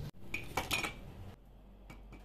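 Glass storage jars clinking against each other as they are set down and moved on a shelf, a quick cluster of ringing knocks about half a second in, followed by a couple of faint knocks.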